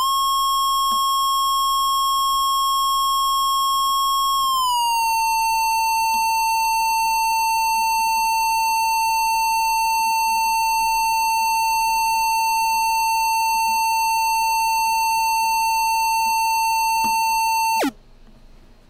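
Synthesized oscillator tone from a Max/MSP mouse-theremin patch, rich in overtones. It slides up at the start to a high pitch of about 1 kHz, glides down a little about four and a half seconds in, then holds steady. Near the end it drops in pitch and cuts off suddenly as the amplitude is switched off.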